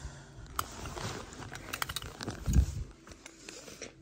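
Handling noise on carpet: scattered light clicks and soft scrapes, with one dull thump about two and a half seconds in.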